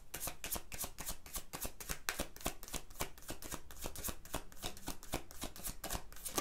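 A deck of cards being shuffled by hand, a quick, steady run of light slaps and riffles of card on card, several a second, before cards are drawn for a reading.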